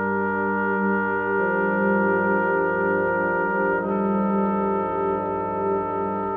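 Trombone choir, bass trombones included, playing sustained chords that change about a second and a half in and again near four seconds.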